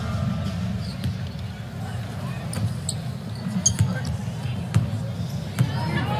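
Basketball bouncing on a hardwood court, a few sharp separate bounces in the second half, over the steady background murmur of an arena crowd.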